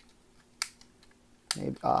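Hard plastic clicking from a Transformers Titans Return Chromedome toy car being handled: a faint click, then a sharper snap about a second later, as a part is pressed home into its tab.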